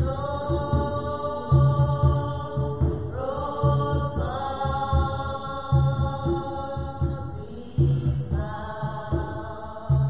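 A slow hymn sung in long held notes, with a tall hand drum beating a slow repeating pattern of low strokes beneath it.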